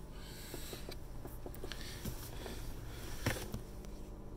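Quiet car-cabin room tone with faint scattered handling clicks, and a sharper click a little over three seconds in as the centre armrest console lid is opened.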